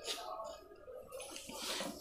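Faint clicks and rustles of a plastic side handle being fitted and tightened onto an impact drill by hand.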